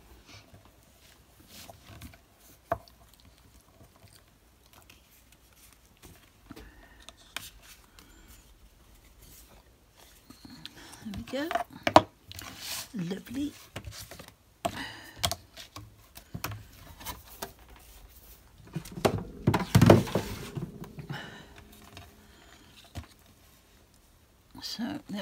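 Handling noise on a craft desk: small clicks and taps as round metal magnets are lifted off a magnetic board, with card stock sliding and rustling. One sharp click comes about halfway through, and a longer rustle of paper about three-quarters of the way in.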